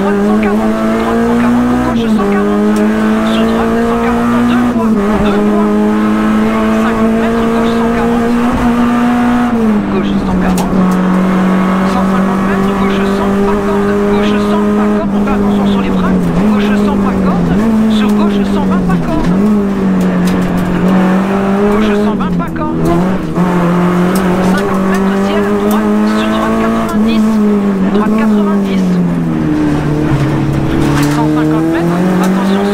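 Renault Clio RS rally car's four-cylinder engine heard from inside the cabin, driven hard on a stage: held at high revs, its pitch dipping briefly at each gear change or braking point, about eight times.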